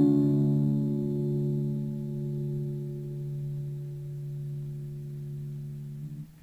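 The final strummed chord of a vintage Harmony baritone ukulele ringing on and slowly fading.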